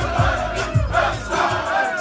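A crowd of football players shouting and chanting together over loud music with a bass beat a little under twice a second.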